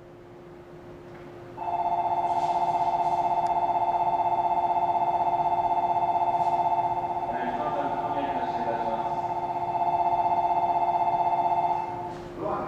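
Station platform departure bell: an electronic warbling ring that starts about a second and a half in, rings steadily for about ten seconds and stops just before the end, signalling the train's departure. A voice is heard over it briefly midway, and a steady low hum runs underneath.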